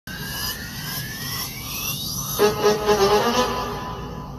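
Background music: a rising swell for the first two seconds or so, then several notes come in together and it grows louder from about halfway.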